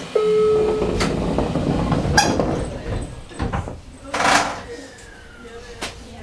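Doors of a JR Kyushu 815-series electric train closing at a station stop: a short steady tone, sliding and knocks from the doors, then a loud hiss of air about four seconds in, followed by a faint falling whine.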